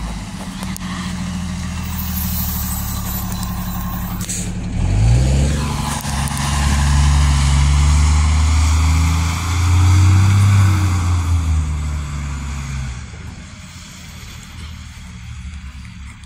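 New Flyer D40LF diesel transit bus pulling away from a stop. The engine runs steadily, with a hiss of air released from the brakes, then revs up about five seconds in as the bus accelerates. Its note climbs and drops back a few times as the transmission shifts up, then fades as the bus drives off.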